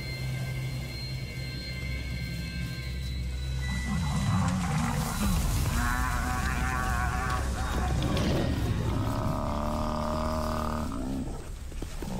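Music with long held notes gives way, about four seconds in, to the noisy rush of lions charging a Cape buffalo bull. Two long, wavering animal calls follow, one about six seconds in and a longer one about nine seconds in: lions snarling as they pull the bull down.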